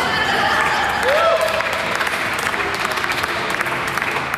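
Audience applauding, with voices cheering over the clapping; one voice calls out about a second in.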